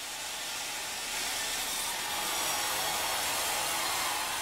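A steady rushing noise, with no clear rhythm or pitch, that fades in over about the first second and then holds even.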